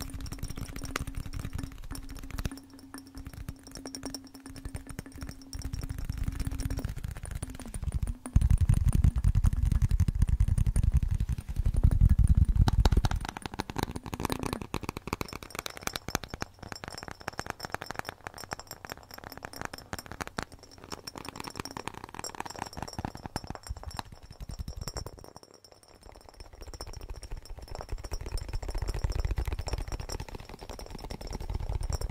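Layered fingertip tapping and handling on a bottle: overlapping tracks of rapid clicks and taps, with heavier low thuds that grow loudest from about eight to thirteen seconds in.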